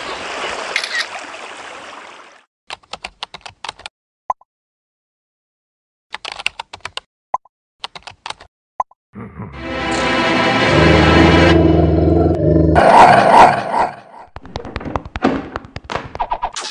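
A sequence of cartoon sound effects: a brief wash of sea surf at the start, then scattered bursts of computer-keyboard typing, then a loud, low, pitched rumbling sound lasting about four seconds that ends in a noisier burst, and a quick run of pattering clicks near the end.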